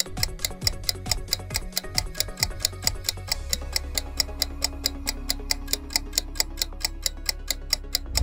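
Countdown timer sound effect: fast, evenly spaced clock ticking over a low background music drone, whose bass swells about three seconds in.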